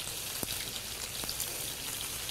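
Alligator sausage slices and fish cakes frying in hot skillets: a steady sizzle, with a couple of faint clicks.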